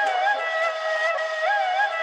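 Middle Eastern-style flute melody over a sustained tone, its notes bending in a short ornamented figure that repeats about every second and a half, with no drums or bass yet.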